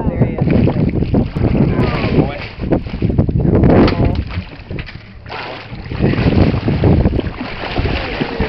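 Wind buffeting the microphone over water sloshing and churning at a boat's side, where a hooked shark is thrashing at the surface, with brief bits of voices.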